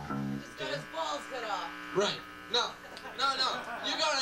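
A man's voice through a handheld microphone and PA, buzzy and distorted, with no clear words. A held guitar note dies away in the first half second.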